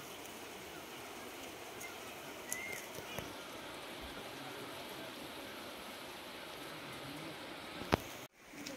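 Steady, faint rushing outdoor ambience of an open valley, with a few faint bird chirps and a light click about three seconds in.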